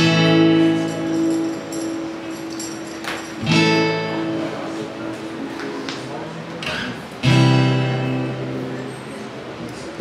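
Acoustic guitar strumming chords and letting them ring: three chords, struck about every three and a half seconds, each fading slowly.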